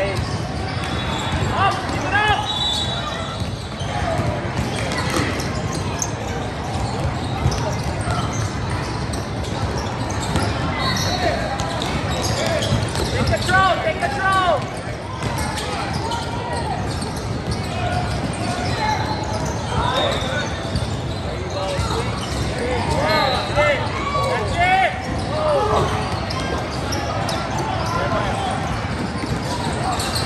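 Youth basketball game in a large hall: the ball dribbling on the court, sneakers squeaking in short rising-and-falling squeals, over a steady murmur of spectators' voices.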